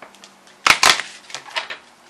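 A deck of oracle cards being shuffled and handled by hand: two sharp card snaps close together a little over half a second in, then a few lighter clicks.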